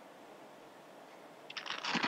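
Faint, steady room tone and hiss on the chamber's microphone feed. Near the end comes a short noisy rustle, just before a man's voice starts.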